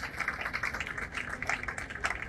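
An audience clapping in welcome: light, irregular claps.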